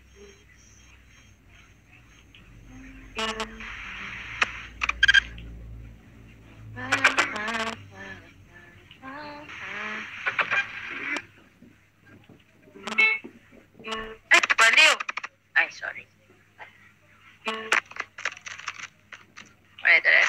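A woman's voice in short, broken phrases, with pauses of a second or two between them.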